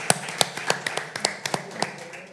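Audience applause, with several sharp, close individual claps standing out, thinning and fading toward the end.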